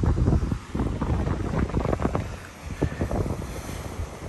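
Gusty wind buffeting the microphone in irregular low rumbles, easing a little past the middle, with the wash of surf on the rocky shore underneath.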